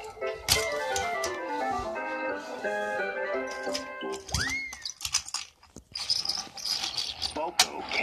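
Cartoon-episode background music: a quick run of short stepping notes. About four and a half seconds in comes a single sliding pitch that rises and falls, and a hiss fills the last two seconds.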